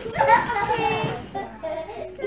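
A toddler babbling in high-pitched, word-like sounds with no clear words, one longer stretch and then a short one.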